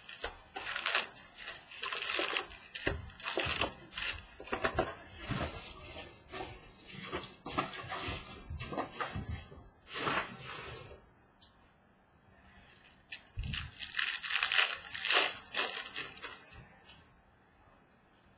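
A cardboard hobby box of baseball cards being opened and its foil-wrapped packs handled, a run of crinkling, rustling bursts. There is a brief quieter pause, then more rustling.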